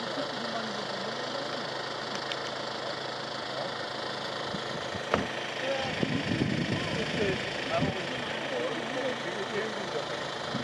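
A parked Hyundai minivan's engine idling steadily, with quiet voices over it. A sharp click comes about five seconds in, followed by two or three seconds of louder handling noise.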